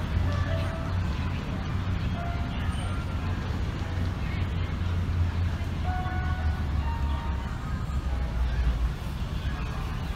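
Steady low rumble of road traffic, with short scattered higher tones over it.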